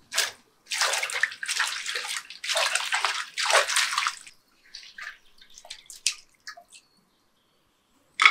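A hand swishes green chillies around in a bowl of water, splashing and sloshing for about three and a half seconds, then scattered drips and small splashes follow as the chillies are lifted out.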